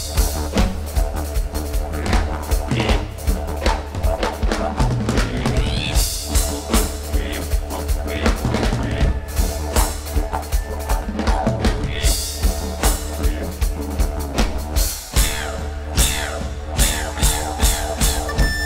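Live pagan-folk band playing an instrumental passage: a rock drum kit beating a steady rhythm over a continuous deep didgeridoo drone. The music drops for a moment about three-quarters of the way through, then carries on.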